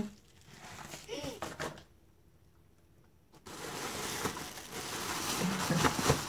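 Plastic bag and bubble wrap crinkling and rustling as they are handled, starting about three and a half seconds in after a short stretch of near silence.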